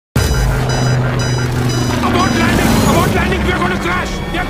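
Film trailer soundtrack: a steady low drone with music for about the first two seconds, then a voice speaking over it.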